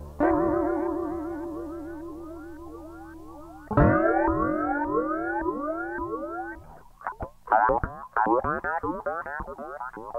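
Effects-laden electric guitar in a psychedelic rock piece: two struck notes, just after the start and again near four seconds in, each held with wide vibrato under repeating swooping pitch glides that fade away. From about seven seconds in, a fast, choppy run of swept notes takes over.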